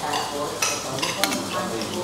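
Cutlery scraping and clinking against ceramic bowls and plates as food is picked apart, with a few sharp clinks in the middle.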